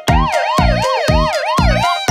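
Police-car siren sound effect, a fast up-and-down wail repeating about three times a second, over a steady musical backing beat.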